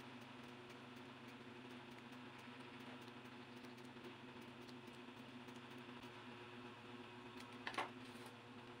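Faint repeated snips of small scissors cutting into a paper strip, over a steady low hum. Near the end, a brief louder clatter as the scissors are set down on the table.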